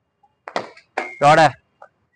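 A man's voice calls out a short word, loudest at about a second and a half in. It follows a sharp, noisy sound about half a second in.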